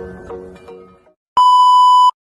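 Music fades out over the first second. After a short silence, a loud, steady, single-pitched beep starts about one and a half seconds in: a colour-bar test tone.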